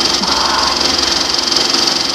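Film projector running, its mechanism clattering rapidly and steadily.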